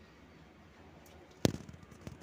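Faint handling of a peeled litchi over a glass bowl, then one sharp tap about one and a half seconds in with a short ring after it, the kind of knock made when a knife or a litchi seed strikes the glass bowl. A smaller tap follows near the end.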